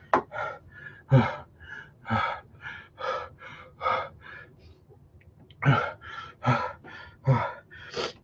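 A man panting and gasping in quick, breathy puffs, a few of them voiced, with a short lull about five seconds in. This is hard mouth-breathing against the burn of an extreme hot sauce.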